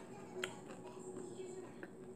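Chewing pizza close to the microphone: faint wet mouth clicks and smacks, the sharpest about half a second in and another near the end.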